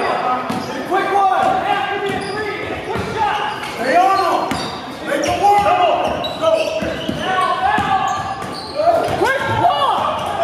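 Live game sound of a basketball game on a hardwood gym floor: sneakers squeaking, a basketball being dribbled and bouncing, and players calling out, in a large echoing hall.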